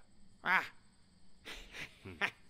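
A short wordless voice sound about half a second in, followed by a few breathy puffs.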